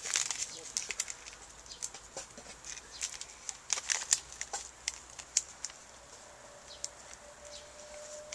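Instant-coffee sachets rustling and crinkling in the hands, with scattered light clicks and a denser flurry about four seconds in.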